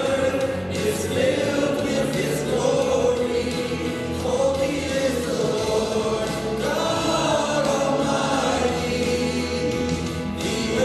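Several voices singing a worship song together, led by a man at a microphone, with musical accompaniment.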